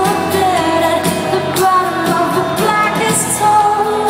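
Live acoustic rock band: a woman singing lead over strummed acoustic guitars, heard from the audience in a large arena.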